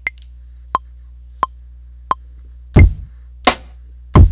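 Maschine metronome count-in at about 88 BPM: one accented higher click, then three lower clicks evenly spaced. On the next accented click a kick drum sample hits, and a snare drum sample follows one beat later.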